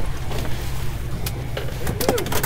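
Boat motor rumbling steadily under wind and water noise on the open sea as a mahi is fought at the boat, with a few sharp knocks in the second half.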